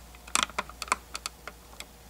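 An uneven run of about ten sharp clicks in a second and a half, like keys being typed, the first few the loudest.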